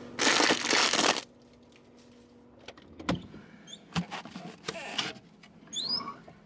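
Handling noise from reaching into a refrigerator: a loud rustle lasting about a second as something is grabbed, followed by scattered clicks and short crinkling squeaks.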